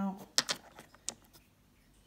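A few light, sharp clicks and taps, the sharpest about half a second in and another about a second in, from hands handling the stones and plastic pond dish or the phone.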